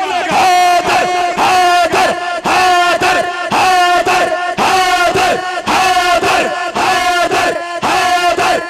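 A crowd chanting a short religious slogan in unison over and over, roughly once a second, led by a man's amplified voice on a microphone.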